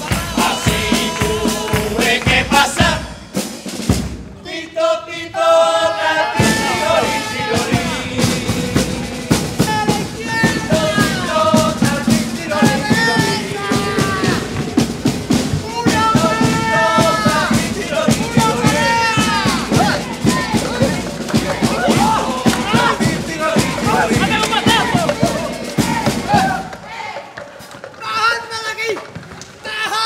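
Carnival murga group performing: a chorus of voices singing over a bass drum and snare beat. There is a short break about three to six seconds in, and the music drops away near the end.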